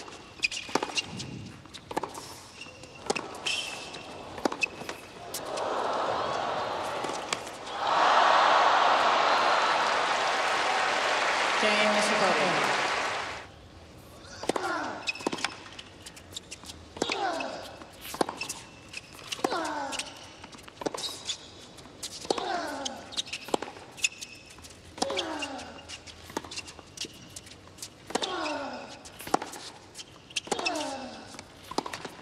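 Tennis ball struck by racquets and bouncing on a hard court, then loud crowd cheering and applause for about six seconds after the point. A new rally follows, with a player's short grunt, falling in pitch, on each shot about every two and a half seconds.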